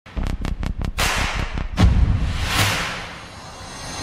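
Edited intro sound effects: a rapid run of about six sharp ticks, then two hard hits, the second with a low boom, trailing into a noisy whoosh that fades away.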